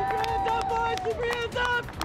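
Voices calling out: one note held for about a second, then several shorter calls.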